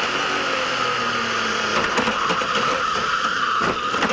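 V8 stock-car engine running hard, heard through the in-car camera inside the cockpit, with two brief knocks about two seconds in and near the end.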